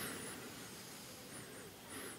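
A faint, long breath, a soft airy rush that is loudest at the start and slowly fades away.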